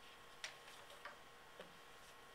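Near silence: room tone with three faint short clicks, the sharpest about half a second in.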